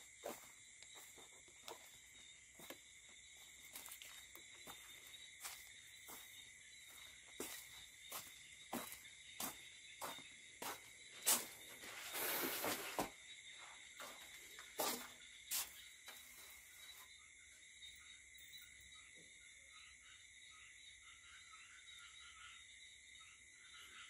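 Night insects such as crickets chirring steadily at a high pitch. Footsteps on dirt and debris fall about every half second, with a louder scuffing rustle near the middle; the steps stop about two-thirds of the way through.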